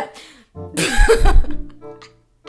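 A woman bursts into loud, breathy laughter about half a second in, lasting about a second, with faint background music underneath.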